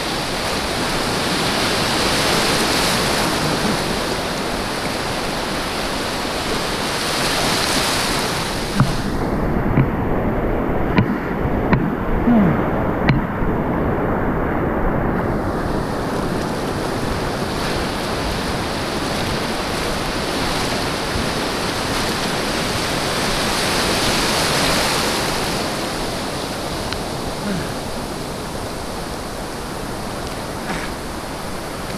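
Ocean surf breaking and washing through the shallows, swelling and easing every few seconds. For several seconds midway the sound goes dull, with a few sharp knocks.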